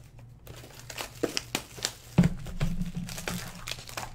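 Clear plastic shrink-wrap crinkling and tearing as it is pulled off a sealed trading-card box, in sharp crackles, with a knock about halfway through.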